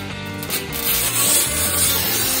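Manual tile cutter's scoring wheel running along the glazed face of a large tile, a steady scratchy hiss that starts about two-thirds of a second in, over background music.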